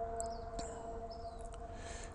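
Steady background hum holding two even tones over a low rumble, with a few faint, brief high-pitched sounds.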